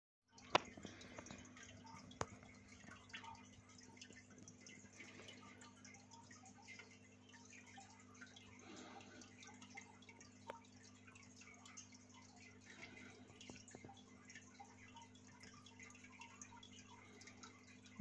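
Near silence: the faint steady hum and soft trickling of a running aquarium, with a few sharp clicks, the loudest about half a second in.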